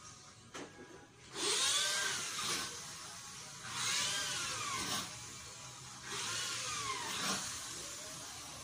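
A small high-speed motor whirring up and back down in pitch three times, each burst about a second long.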